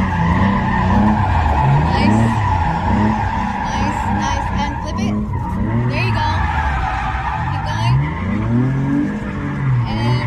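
Nissan 350Z with an automatic gearbox drifting in figure eights, heard from inside the cabin: the engine revs up and down in repeated surges every second or two while the rear tyres squeal steadily, breaking traction.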